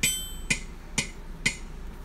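Yamaha electronic keyboard sounding four even metronome-like clicks, two a second, the first with a brighter ringing tone.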